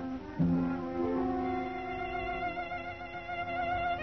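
Instrumental song accompaniment with a solo violin carrying the vocal line. A new chord enters about half a second in, and later a sustained violin melody with vibrato rises over held lower notes.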